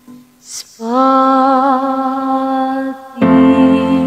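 A woman singing a Blaan song, holding one long note with a slight vibrato after a short quiet pause. About three seconds in, a louder, fuller passage with a deep keyboard accompaniment comes in under the voice.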